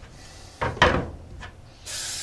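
A quad's rear wheel bearing carrier being handled and turned inside a plastic bucket. It knocks and rubs against the bucket twice, briefly, a little before and after the middle.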